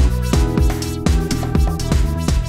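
Upbeat background music with a steady drum beat, about three beats a second.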